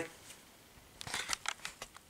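Faint handling noise on the recording device: a quick run of light clicks and rustles starting about a second in.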